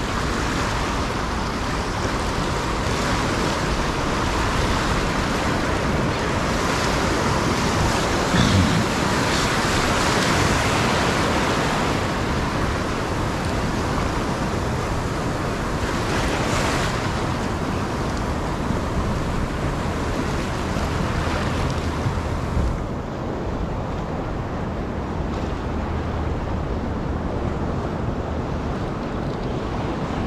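Ocean surf breaking and washing close around a wading angler, a steady loud rush of water, with a brief louder surge about eight seconds in.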